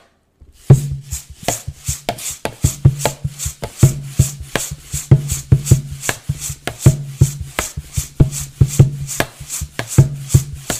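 Rhythmic percussion performance: a dense, even pattern of sharp clicks and hissing hits, several a second, over a steady low hum. It starts under a second in, after near silence.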